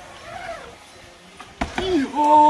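BMX bike riding on a wooden ramp, with one sharp knock about one and a half seconds in. Right after it a voice calls out with a drawn-out, falling cry near the end.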